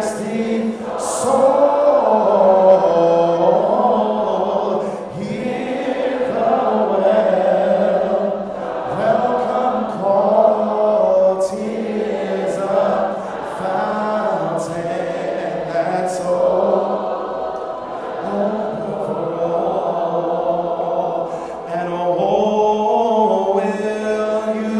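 A group of voices singing together a cappella in slow, held notes, with no instruments.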